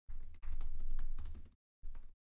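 Typing on a computer keyboard: a quick run of keystrokes lasting about a second and a half, then a short second burst near the end, with a low rumble beneath the clicks.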